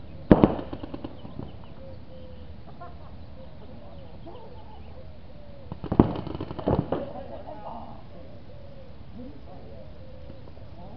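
Paintball markers firing quick strings of shots: a short burst just after the start, then a second volley around six to seven seconds in.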